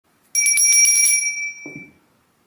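A bright bell ringing with rapid repeated strikes for about a second, fading out, followed by a brief low thud near the end.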